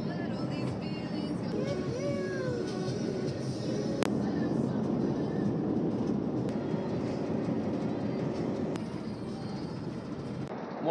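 Steady road and engine noise inside a van cruising along a highway, with music playing over it.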